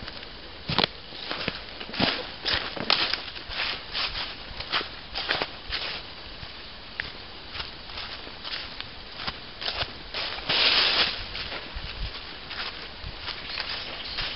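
Footsteps crunching through dry fallen leaves on a woodland path, about two steps a second, with a longer, louder scuffle through the leaves about three quarters of the way through.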